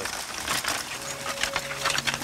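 Irregular clicks and rattles of a horse-drawn spring-tine harrow dragged over tilled soil, as the horse walks. A faint steady tone comes in about halfway through.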